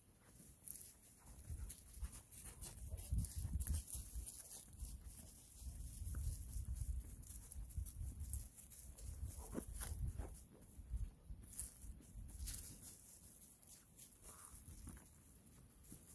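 Footsteps of a person and a dog crunching and rustling through dry fallen leaves, in irregular short crackles, with a low uneven rumble on the microphone.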